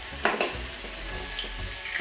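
An egg being cracked open over a small glass bowl, with one short sharp crack or clink about a quarter second in. Behind it, food sizzles steadily in a frying pot.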